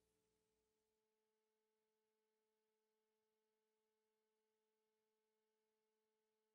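Silence: the song has ended, leaving only digital silence with a residual hum far too faint to hear.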